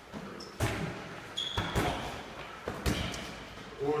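Boxing-glove punches landing on focus mitts: sharp smacks about half a second in, a quick cluster between one and a half and two seconds in, and another just before three seconds, with a brief high squeak among them.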